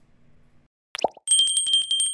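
Subscribe-button sound effect: a click and a short pop falling in pitch about a second in, then a small bell ringing in a rapid trill of strikes, its high ring carrying on to the end.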